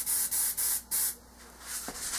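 Paint sprayer hissing in several short, quick bursts of air, which stop about a second in.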